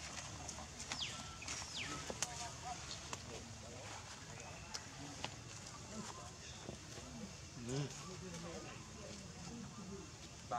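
Faint, indistinct voices in the distance over a steady background hiss, with a few brief falling whistle-like animal or bird calls early on and scattered light clicks.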